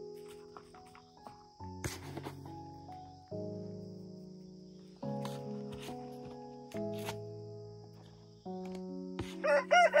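A rooster crowing loudly near the end, over soft background music of sustained keyboard chords that change every second or two.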